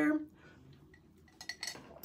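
A few light clinks and clicks of objects being handled, in the second half, after a quiet stretch.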